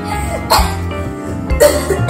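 A girl coughing twice, about half a second in and again near the end, over background music.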